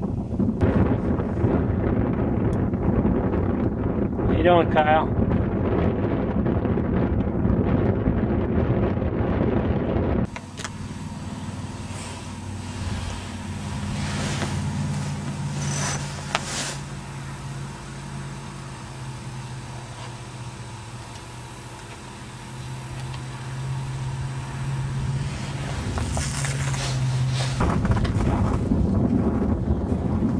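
Wind buffeting the microphone out on open ice: a rough low rumble, with a short wavering voice-like sound a few seconds in. It drops abruptly about ten seconds in to a quieter stretch with a steady low hum, and the rumble returns near the end.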